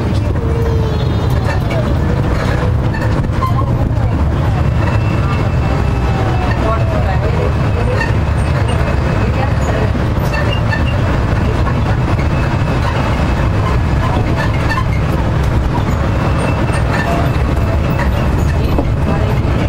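Steady low rumble of wind and road noise from travelling along a street, with a few faint wavering tones above it.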